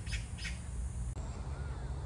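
A bird calling in a rapid series of harsh, chattering notes that stop about half a second in. After an abrupt break, a fainter outdoor background follows, with a low rumble and a faint gliding bird whistle.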